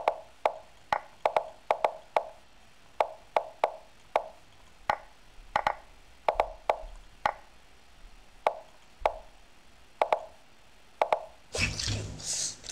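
Online chess move sounds: short wooden-sounding knocks, one for each move, coming quickly and irregularly at about two a second during a bullet time scramble with only seconds left on the clocks. A burst of laughter comes at the very end, when the game ends on time.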